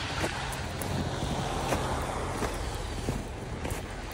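Footsteps in wet snow, a few uneven steps, over a steady low rumble and hiss.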